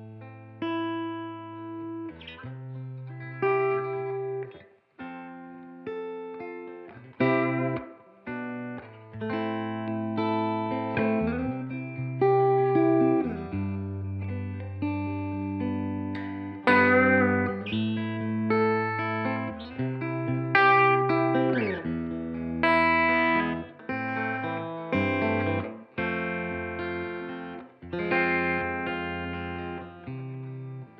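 1962 Fender Stratocaster electric guitar played through a Carr Super Bee combo amp: chords and single-note lines in short phrases with brief gaps between them. The notes ring out, and there are a couple of slides in pitch.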